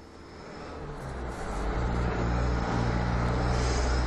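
Motor vehicle engine and road noise, fading up over the first two seconds into a steady low drone.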